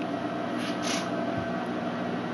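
Steady machine hum of room equipment, holding several constant tones. Two brief soft rustles come about half a second and a second in.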